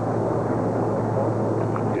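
A tugboat engine idling: a steady low hum with an even rumble over it.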